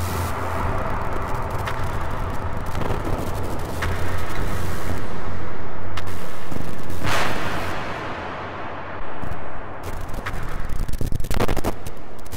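Electronic sci-fi soundtrack: a steady low drone under a swelling rush of noise that peaks in the middle and then falls away. Near the end comes a rapid stutter of short pulses.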